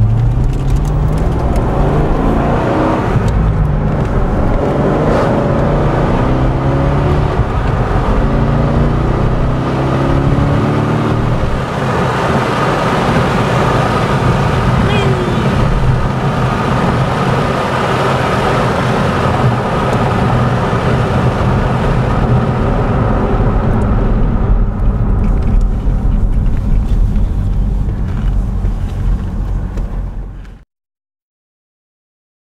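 2007 Corvette Z06's 7.0-litre LS7 V8, heard from inside the cabin, accelerating through the gears of its six-speed manual. The pitch climbs and drops back with each upshift over the first ten seconds or so, then the engine settles into a steady cruise.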